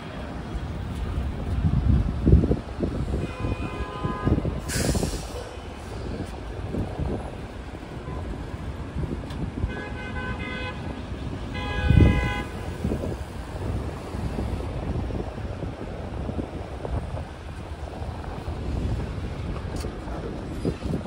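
City street traffic: vehicles running past with a steady low rumble, and horns honking, once about three seconds in and twice more around ten to twelve seconds. A short hiss comes near five seconds.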